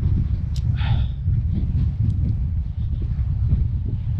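Wind buffeting the camera's microphone, a steady uneven low rumble, with a brief rustle about a second in.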